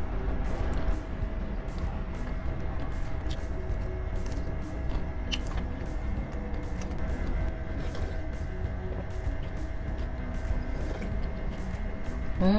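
Steady low mechanical hum with a couple of faint steady tones over it, from a machine running in the background, heavy enough to be a noise problem in the recording. A few light clicks now and then.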